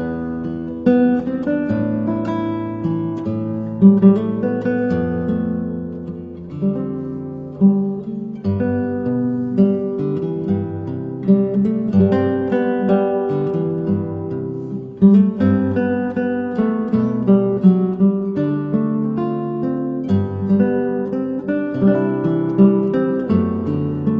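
Instrumental acoustic guitar music: a run of plucked notes and strummed chords.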